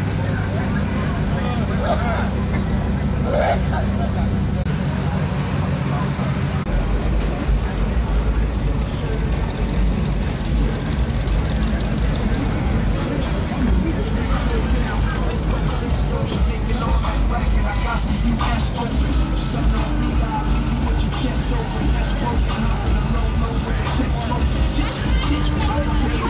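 Classic lowrider cars rolling slowly past one after another, engines running at low speed, with a deep rumble that grows stronger about seven seconds in, amid crowd chatter.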